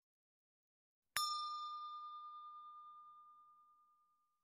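A single bell ding sound effect, struck about a second in and ringing out with a clear, slowly fading tone for about two and a half seconds.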